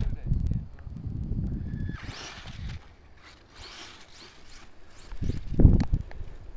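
Brushless electric mini monster truck (HPI Savage XS Flux) driving off across grass, heard as short hissing bursts about two and four seconds in. Wind rumbles on the microphone throughout, loudest in a gust near the end.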